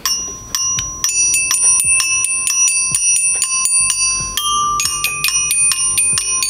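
Toy glockenspiel with metal bars, struck with mallets by two players together: a rapid, busy run of bright ringing notes that overlap one another.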